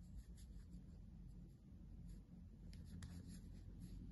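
Faint rubbing and light clicks of a metal crochet hook working through velvet chenille yarn, barely above room tone.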